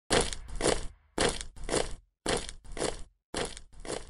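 Intro sound effect: four pairs of short, harsh noise hits, each hit starting sharply and fading, the two of a pair about half a second apart and a new pair about every second.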